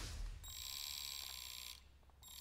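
Animated end-card sound effect: the tail of a whoosh dies away, then a faint, high electronic ringing shimmer of several steady tones sounds from about half a second in until shortly before the end.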